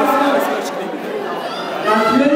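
Speech and chatter echoing in a large hall, with a man talking into a microphone over the sound system.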